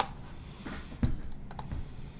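Irregular clicks of typing on a computer keyboard, with a dull knock about halfway through.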